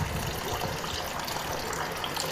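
Tap water running steadily, its stream splashing into a plastic tub already full of water.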